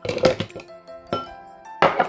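Frozen strawberries clattering out of a glass bowl into a plastic blender cup, then a sharp knock near the end as the bowl is set down, over background music.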